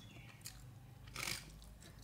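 Faint close-up chewing of food, with one slightly louder mouth sound just past a second in.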